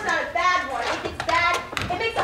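Young performers' voices on stage, with hand claps mixed in.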